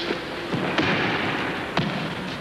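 A few dull thumps and scuffling over a rough hiss: bodies landing and judo jackets rubbing on the mat as the opponent is turned over in a reversal.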